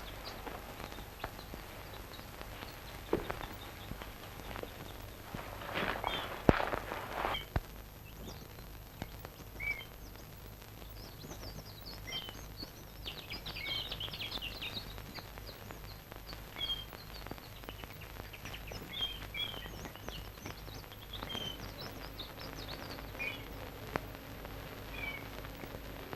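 Birds chirping in many short, high calls through most of the stretch, over the steady hum and hiss of an old film soundtrack. A few brief rustling noises come about six to seven seconds in, before the birdsong starts.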